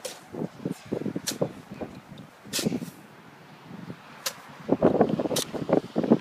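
Plastic snow shovels scraping and scooping snow: a run of irregular short scrapes and crunches, with a few sharp clicks.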